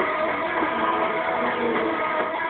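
Live noise-rock band playing loudly, electric guitar to the fore, heard from the audience.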